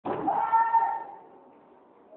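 A single loud, high-pitched cry, held for about a second and then fading away.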